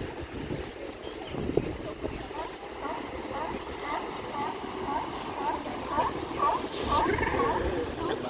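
California sea lions barking in bouts of short, repeated calls, a few a second, over the steady wash of surf breaking on the rocks.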